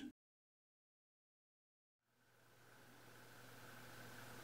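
Near silence: dead silence for about the first two seconds, then faint room tone with a low steady hum.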